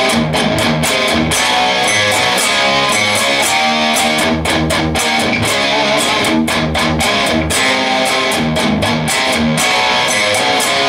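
Electric guitar playing a rock riff in a steady rhythm of short, repeated low chords and picked notes.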